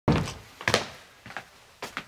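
An office door knocked open with a heavy thunk, then several footsteps on a hard floor.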